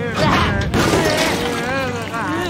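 Cartoon sound effect of glass shattering and crashing right at the start, as tentacles smash in through the windows, with characters' voices crying out over and after it.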